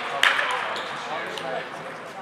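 Sharp clicks of celluloid-type table tennis balls bouncing, one strong click just after the start and a few fainter ones later, over a low murmur of voices in the hall.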